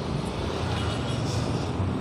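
Road traffic close by: vehicle engines running in slow traffic, a steady low hum under road noise.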